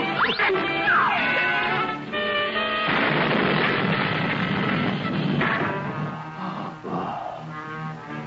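Cartoon orchestral score with sound effects: quick rising and falling whistle-like pitch slides in the first second or so, then a long noisy crash from about three seconds in that lasts a couple of seconds, under the music.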